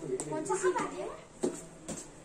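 Children's voices talking and calling out, with a few short knocks, one near the start and two in the second half.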